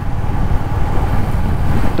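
Royal Enfield Classic 350's single-cylinder engine running steadily under way, a dense low engine note with wind noise on the microphone.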